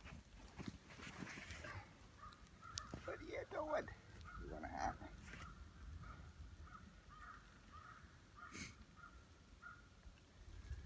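A person's voice making brief wordless sounds, loudest about three to five seconds in, with a faint higher note repeating through the second half.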